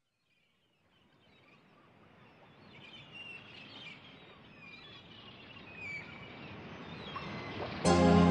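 A rushing outdoor ambience fades in and grows louder, with birds chirping over it. Music starts abruptly near the end.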